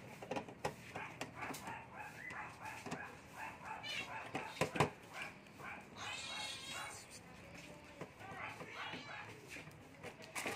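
Indistinct background voices with scattered clicks of metal parts being handled, and one sharp knock about five seconds in; a brief higher-pitched whine follows a little after six seconds.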